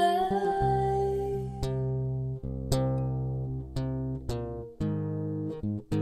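Acoustic guitar playing single plucked notes that ring and die away, one every half second to a second, between sung lines. A held sung note ends about half a second in.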